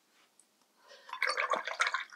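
A watercolour brush swished and rinsed in a water jar, with splashing and dripping, starting about halfway through.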